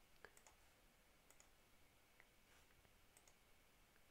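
Near silence with a few faint, short computer mouse clicks scattered through.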